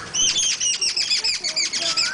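A bird chirping rapidly: a fast run of high chirps, each falling in pitch, several a second, starting suddenly.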